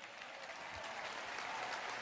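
An audience applauding, the clapping growing steadily louder.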